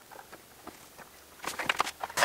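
Quiet room, then a quick run of short scuffs and clicks about one and a half seconds in, from hands working an aerosol can of silicone spray lube on a rubber grommet.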